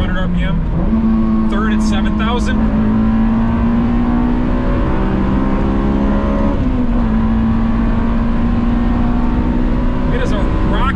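Honda S2000's 2.0-litre four-cylinder engine pulling hard under acceleration, heard from inside the cabin. Its pitch dips briefly, then steps up under a second in and climbs gradually. About seven seconds in it drops a little and then holds steady.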